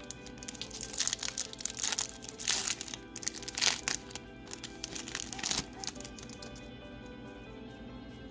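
Foil wrapper of a Pokémon booster pack crinkling in quick bursts as it is handled and torn open, easing off about six seconds in. Background music runs under it.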